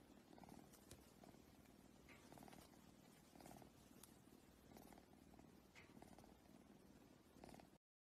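Faint cat purring, swelling and fading about once a second with each breath. It cuts off abruptly near the end.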